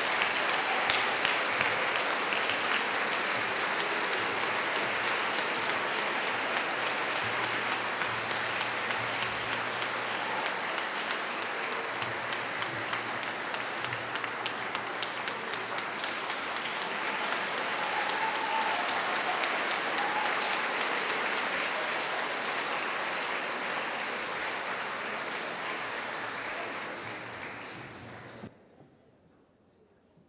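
A large audience clapping steadily in a hall. The applause dies away near the end.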